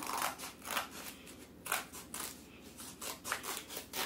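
Scissors snipping through sheets of paper, cutting strips: a dozen or so short, sharp snips at an uneven pace.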